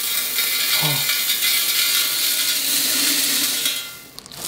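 Dry diced potatoes pouring out of a large tin can, a steady, dense rattling rush of many small hard pieces that stops just before the end.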